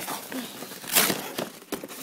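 Hands handling a plastic toy and its packaging close to the microphone: rustling and crinkling, with one sharp, louder crackle about a second in.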